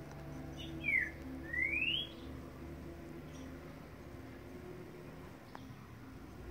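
A bird's whistled call: a short falling note about a second in, then a longer rising note, heard over a faint steady hum.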